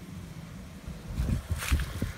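Wind buffeting a handheld phone's microphone as an uneven low rumble, with a few brief rustles of handling noise a little past halfway.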